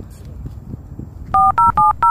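Smartphone keypad dialing tones: three quick two-tone DTMF beeps in the second half, evenly spaced about four a second, with a fourth starting right at the end, as a number is keyed in.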